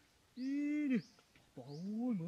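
Two drawn-out, voice-like calls, each rising and then falling in pitch: one complete call, then a second starting near the end.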